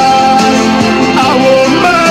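Music: a recorded love song playing steadily at full volume, with held notes and a gliding melody line.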